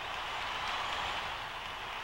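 A steady, even rushing noise with no distinct events.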